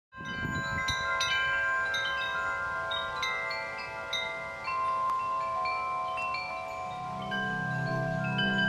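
Metal tube wind chimes ringing, struck at irregular moments, with each note hanging on and overlapping the next. A low steady tone comes in near the end.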